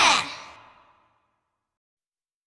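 The last sung note of a children's song glides down and fades out within about a second, followed by silence.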